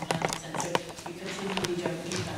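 Low talk among people at a meeting table, with a quick run of sharp taps and knocks in the first second, the loudest of them just before the middle.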